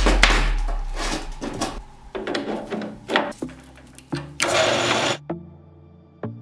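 Short pieces of solid steel round bar clinking and knocking as they are handled on a steel workbench, with background music. A short loud rushing burst comes about four and a half seconds in, then the music goes on alone with a slow beat.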